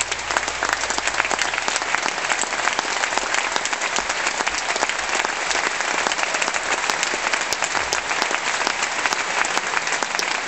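Concert audience applauding, the clapping swelling up just as it begins and then holding steady and full.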